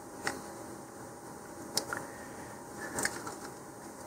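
Three faint, sharp clicks about a second apart over quiet room tone: small handling sounds of a steel ruler being shifted against a rocket body tube while a measurement is lined up.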